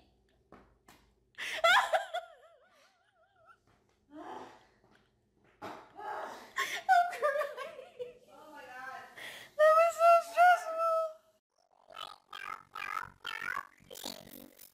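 A person's high-pitched voice laughing hard in wavering bursts, loudest about two seconds in and again about ten seconds in.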